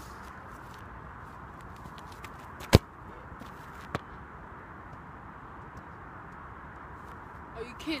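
A football kicked hard once, a single sharp smack of boot on ball, followed about a second later by a fainter knock over a steady outdoor hiss.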